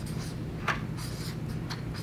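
Marker pen writing on flip-chart paper in a series of short strokes, two of them sharper than the rest, over a steady low hum.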